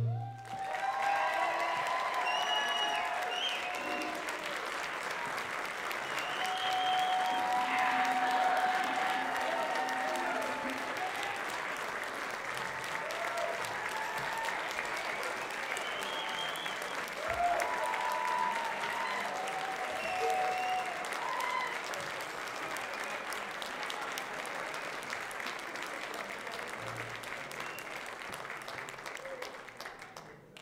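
Auditorium audience applauding and cheering right after the band's final chord, with scattered whoops and shouts over dense clapping; the applause slowly thins out near the end.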